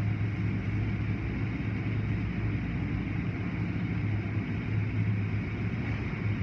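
Automatic tunnel car wash heard from inside the car: a steady low hum of the wash machinery under a continuous wash of cloth strips and water spray sweeping over the windshield.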